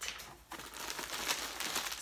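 Clear plastic packaging crinkling and rustling as items are pulled from a cardboard box, starting about half a second in and going on steadily.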